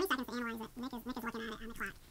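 A person's voice making a sound without words: a quick run of short notes held at one steady pitch, loud from the first instant.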